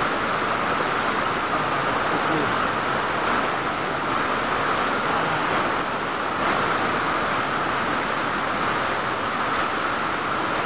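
Waterfall water pouring down a rock face close to the microphone: a steady, unbroken rush of water noise.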